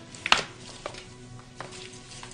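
Three sharp clicks or knocks, the first and loudest about a third of a second in and two lighter ones after it, over faint sustained background music.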